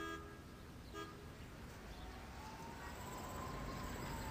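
Low street-traffic rumble, with a car horn tooting briefly at the start and again about a second in. Later a faint distant siren slowly rises and falls in pitch.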